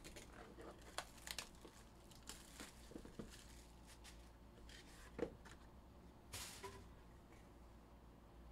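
Faint handling of cardboard trading-card boxes: scattered soft taps and clicks as the boxes are moved, and a short tearing rustle near the end as a box is opened.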